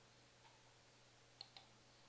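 Near silence broken by faint computer mouse clicks, two close together about one and a half seconds in.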